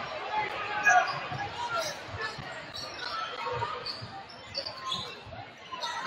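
Basketball dribbled on a hardwood gym floor, irregular thumps heard under the murmur of a crowd's voices in a large, echoing gym.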